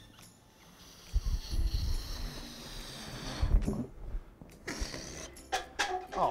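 Air rushing out of a released toy balloon with a thin, high squeal for about three seconds, then a few short knocks as plastic cups are knocked over on a metal table.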